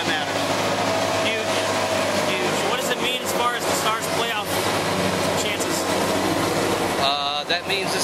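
Indistinct talking over steady background noise with a low hum.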